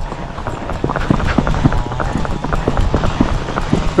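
Hooves of a young gaited colt striking a paved road in a quick, even run of beats as it is ridden.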